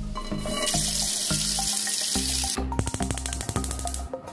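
Tap water running into a pan in a sink for about two seconds. This is followed by a quick run of sharp clicks from a gas hob's igniter as the burner lights, all over background music.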